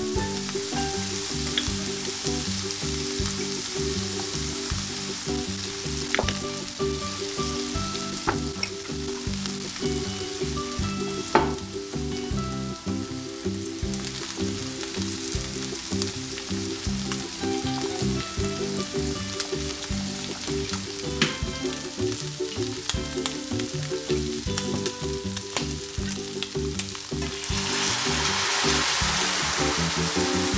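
Shrimp and sweet potato gnocchi sizzling steadily in a skillet, with a few light clicks from utensils. The sizzle grows louder near the end.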